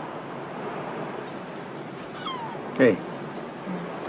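Steady wash of sea surf and wind. About two seconds in there is a short falling cry, and just before three seconds a single brief, louder pitched cry.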